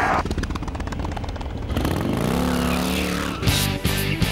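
Motorcycle engine running with a fast pulse, then revving up, its pitch climbing from about halfway through, mixed with intro music.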